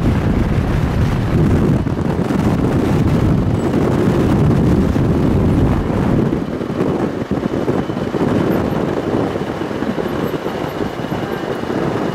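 Road and wind noise of a pickup truck carrying a camper while it drives, with wind buffeting the microphone. The low rumble eases a little about halfway through.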